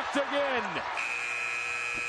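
Basketball shoes squeak on the hardwood court over crowd noise. About a second in, the shot clock buzzer sounds as the shot clock expires: a steady electronic tone held for over a second.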